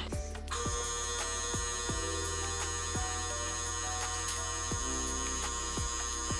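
Electric hydraulic pump motor of a portable scissor car lift running steadily as it raises the lift, a constant hum and whine that starts about half a second in.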